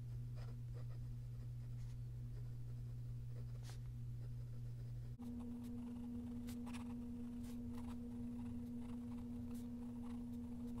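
Fountain pen nib scratching faintly across notebook paper in short strokes as cursive words are written, over a steady low hum.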